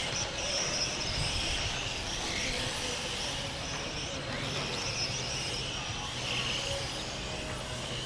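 Electric 2wd M-chassis RC cars with 21.5-turn brushless motors racing on an asphalt track. Their motors and gears make a steady high whine that rises and falls as the cars pass, over a wash of tyre and outdoor noise.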